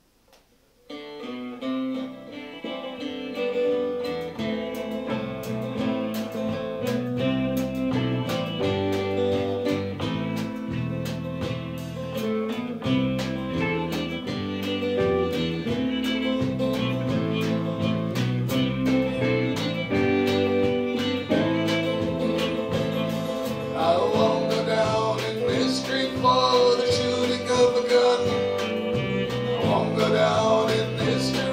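A folk-rock band starts a song about a second in: fiddle, electric and acoustic guitars, bass guitar and drum kit play a steady, beat-driven intro. A man's singing voice comes in near the end.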